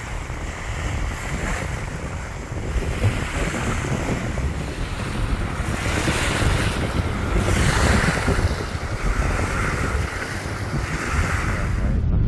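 Small waves washing onto a sandy shore in repeated surges, with wind buffeting the microphone as a steady low rumble.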